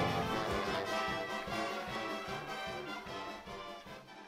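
Marching pep band's brass (trumpets, trombones and sousaphones) playing, the music fading away toward the end.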